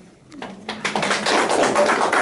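A small group applauding, the clapping starting about half a second in and quickly growing loud.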